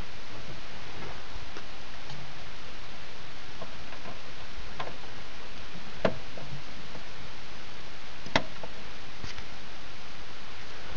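Scattered small clicks and taps of hands working wires and connectors at a DC-DC converter, over a steady hiss; two sharper clicks about six and eight seconds in.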